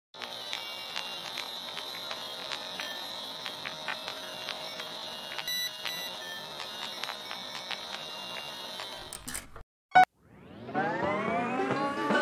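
Old-film style noise effect: a steady hiss with a constant high whine and scattered crackles and pops for about nine seconds. It breaks off, a single sharp loud click follows about ten seconds in, then music comes in sliding upward in pitch, like a tape getting up to speed.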